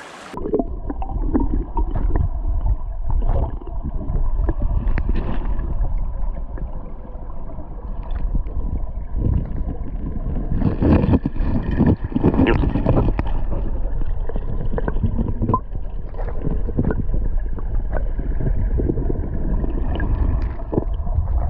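Underwater sound from a camera held below the surface of a flowing stream: a muffled, low rush of current with scattered knocks and clicks.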